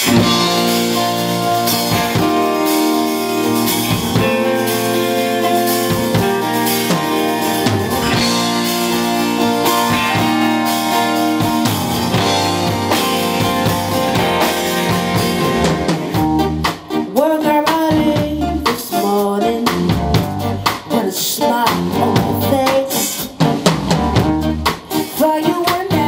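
A live band playing a song: drum kit, guitars and bass start together, and a woman's lead vocal comes in about two-thirds of the way through.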